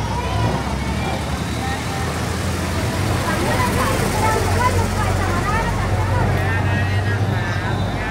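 A Hino garbage truck's diesel engine running as the truck crawls past close by, a steady low drone that grows louder from about three seconds in as it draws alongside. Voices of people nearby chatter over it.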